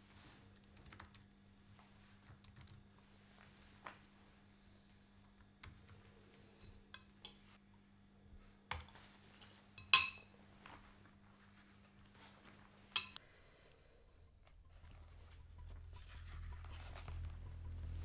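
Soft, scattered clicking of typing on a MacBook laptop keyboard, with a few sharper clicks and one bright, ringing clink about ten seconds in, the loudest sound. A low rumble swells in over the last few seconds.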